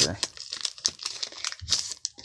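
Foil wrapper of a Pokémon booster pack crinkling in irregular rustles as it is pulled open by hand.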